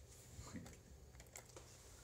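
Faint, scattered key clicks of typing on a computer keyboard, a few irregular taps.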